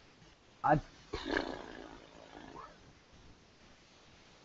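A man's voice: a short hesitant "I", then about a second in a long breathy exhale that fades out.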